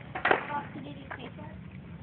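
A small dog lapping milk from a plastic cup held to its muzzle: a few irregular wet slurps, the loudest about a quarter second in, with faint voices behind.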